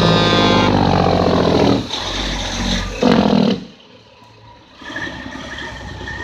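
Semi truck's air horn sounding loudly as the truck goes by, its pitch dropping, then stopping within the first two seconds. The truck's engine noise follows, with a short loud burst about three seconds in, and falls away sharply near the fourth second.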